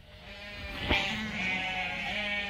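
Crossbred lambs in a gathered flock bleating, with long calls overlapping through most of the two seconds.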